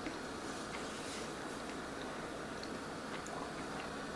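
Quiet room tone with faint, scattered mouth clicks of a person chewing a mouthful of soft cooked fish.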